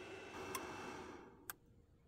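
Single-cup drip coffee maker at the end of its brew: a faint steady hiss dies away a little past a second in, with a light tick midway and then a sharp click, the heater switching off as the brew finishes.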